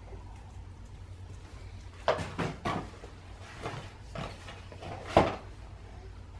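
Short knocks and clatters of a cardboard box and a plastic cup and bottle being handled on a table, several in a row with the loudest about two seconds in and another near five seconds in.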